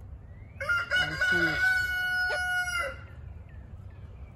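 A rooster crowing once: a single long crow of about two seconds, beginning about half a second in and rising to a held pitch before it breaks off.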